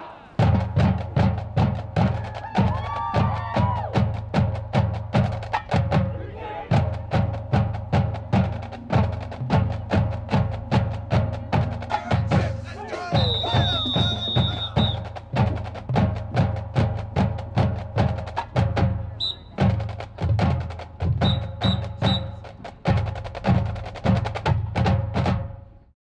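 Marching band drumline playing a cadence, with bass drums hitting about twice a second under sustained band notes. A high whistle-like tone sounds briefly about halfway, and the playing fades out at the end.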